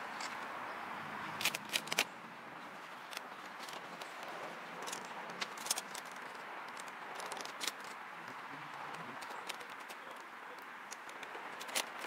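Scattered crackles and clicks of black vinyl wrap film being handled and pressed onto a car's grille trim, over a steady faint background hiss.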